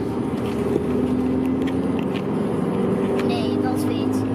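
Steady drone of a car's engine and road noise heard from inside the cabin while driving, with an even hum and no sudden changes.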